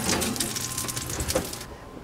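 Onion halves sizzling in hot oil in a frying pan, with a few light knocks of the pan being handled; the sizzle cuts off shortly before the end.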